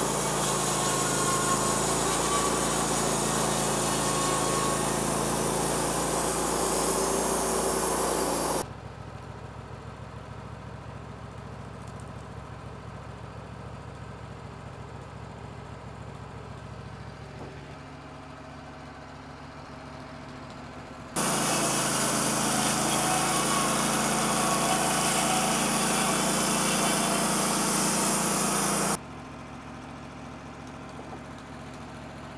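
Wood-Mizer LT15 WIDE portable bandsaw mill sawing cookie slabs from a small red cedar log: the engine and band blade run loud and steady for about nine seconds. It then drops abruptly to a quieter steady engine run for about twelve seconds, and returns to the loud cutting sound for about eight more seconds.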